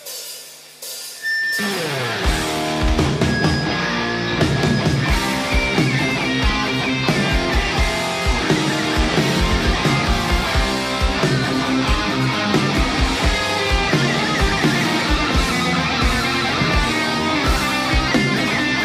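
Heavy metal band playing live: after a brief quiet moment, distorted electric guitars, bass and drums come in loudly about a second and a half in and keep playing the song's opening.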